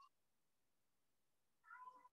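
Near silence, with one faint, short pitched call near the end that falls in pitch, like a distant animal call.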